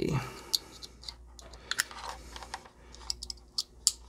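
Hands handling a loose dome tweeter and its red and black wire leads, making scattered small clicks and rustles while connecting it for a test.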